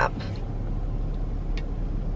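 Steady low rumble of a car idling, heard from inside the cabin, with a faint click about one and a half seconds in.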